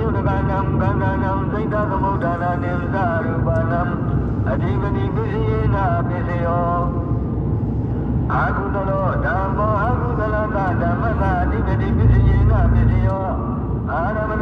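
A man's voice chanting in long, wavering held notes over the steady low rumble of a car driving, heard inside the cabin. The rumble grows louder for about a second near the end.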